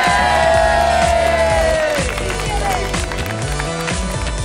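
Background music, with a group of young people cheering and whooping over it for the first two seconds or so before the voices die away.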